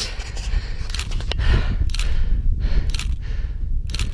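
Wind buffeting an outdoor microphone: a loud, uneven low rumble with hiss over it, and a few sharp clicks, one about a second in and one near the end.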